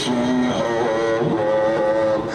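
A man's voice chanting a mourning lament over loudspeakers, in long held, wavering notes.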